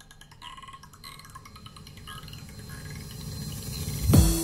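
Quiet breakdown of a psytrance electronic track played on Neumann KH 150 studio monitors: glassy, chiming sounds and sweeping tones over a low swell that grows steadily louder.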